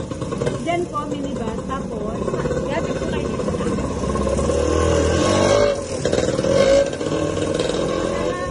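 Voices talking over the running engine of a motor vehicle, which grows louder a little past the middle.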